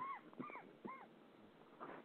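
Three short, faint whining calls, each rising then falling in pitch, about half a second apart, from an animal.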